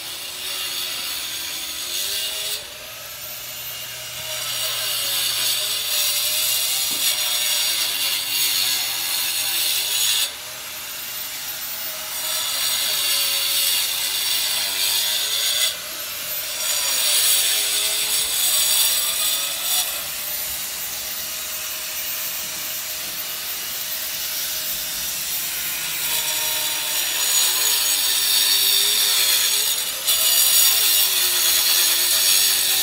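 A power saw cutting. Its motor pitch dips and recovers every few seconds, and the loudness jumps up and down abruptly.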